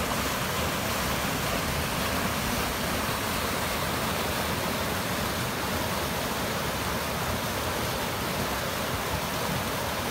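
Muddy flash-flood runoff rushing down a rocky creek channel that is normally dry: a steady rush of water.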